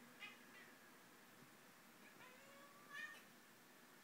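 Domestic cat making two short, faint calls, one just after the start and a slightly louder one about three seconds in, while it watches what its owner takes for a fly.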